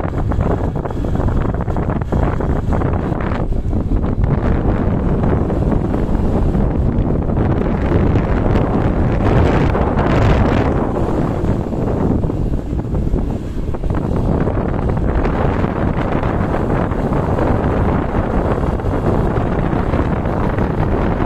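Wind rushing over the microphone of a camera on a moving motorcycle, a steady loud noise, with a brief surge about ten seconds in.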